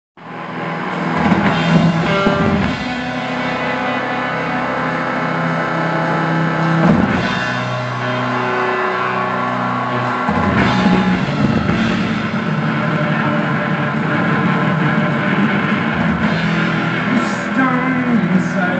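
Live rock band playing an instrumental passage: electric guitar over held keyboard chords, loud, heard from the audience.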